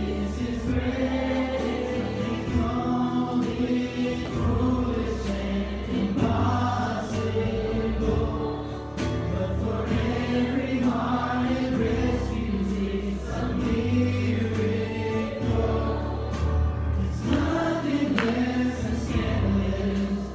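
A youth choir singing a worship song together, over sustained electric bass notes and a steady percussive beat.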